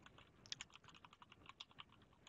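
A quick run of faint keystrokes on a computer keyboard as a short word is typed, starting about half a second in.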